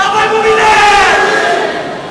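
A man's long drawn-out shout over crowd noise, its pitch sliding down as it fades near the end.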